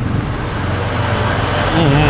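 Steady low rumble of road traffic, with a short wavering voice sound near the end.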